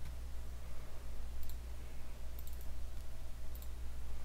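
A handful of faint, short computer mouse clicks over a steady low electrical hum.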